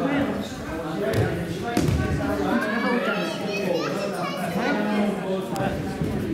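Background chatter of children and adults, echoing in a large sports hall, with a soft thud about two seconds in.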